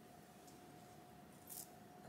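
Near silence: quiet room tone with a faint steady hum, and one brief soft rustle of fingers handling synthetic wig hair about one and a half seconds in.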